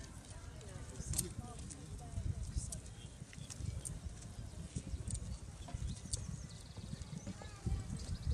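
Faint voices over a low, uneven background noise, with the dull hoofbeats of a horse cantering on a sand arena.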